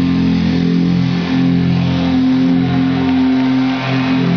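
A live heavy metal band's distorted electric guitars and bass holding loud sustained notes that ring on and shift in pitch about once a second, with a steady high haze of noise over them.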